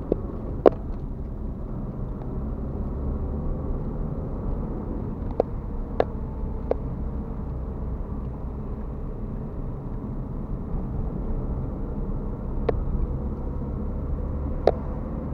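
Car driving, heard from inside the cabin: a steady low road and engine rumble, with a few sharp ticks or rattles, about a second in, a cluster around the middle, and one near the end.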